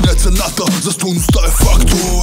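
Hip hop track: a male rapper rapping in Bulgarian over a hardcore hip hop beat with deep bass hits that drop in pitch.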